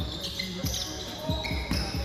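A basketball bouncing on a hardwood gym floor, several separate thumps during live play in a large hall.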